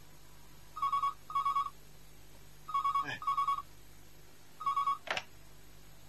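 A desk telephone rings with an electronic double trill, three rings about two seconds apart. The last ring is cut short as the handset is picked up. Two brief sweeping sounds come during the ringing, one in the second ring and one just after the last.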